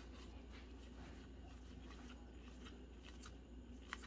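Faint, irregular soft clicks of Magic: The Gathering cards sliding against each other as a pack is flipped through by hand, over a low steady room hum.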